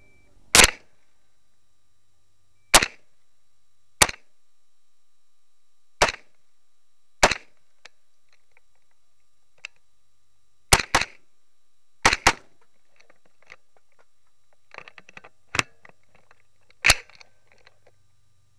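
Carbine firing about eleven shots close to the microphone, spaced a second or two apart with two quick doubles near the middle. Fainter clicks and knocks sound between the later shots.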